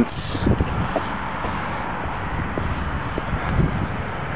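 Steady outdoor street noise with a few low thumps from walking while carrying the camera.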